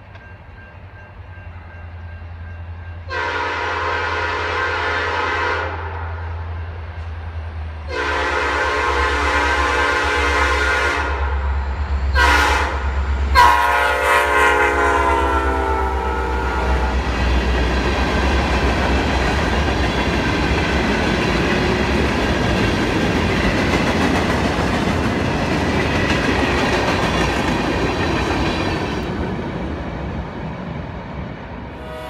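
Norfolk Southern diesel freight locomotive blowing the grade-crossing horn signal as it approaches and passes: two long blasts, a short one, then a long one that drops in pitch as the engine goes by, over the engine's low rumble. Then the steady rolling clatter of covered hopper cars passing on the rails.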